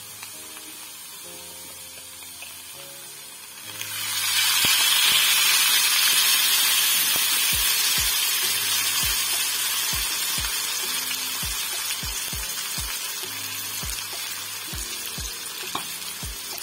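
Chopped red onions and oil sizzling in a pot as the oil goes in. The hiss starts suddenly about four seconds in, is loudest a second later, then slowly dies down.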